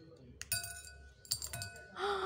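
Small ice balls popped out of a silicone pop-it mold dropping into a ceramic bowl: a few sharp clinks, each leaving the bowl ringing briefly.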